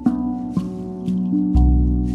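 Meditative music on a RAV steel tongue drum tuned to B Celtic double ding: several notes are struck and left to ring over one another. About one and a half seconds in, a deep shaman drum beat lands, the loudest sound of the moment.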